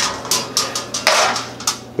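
Metal baking sheet with a wire cooling rack set down on a granite countertop: a run of clattering knocks and rattles, the loudest about a second in.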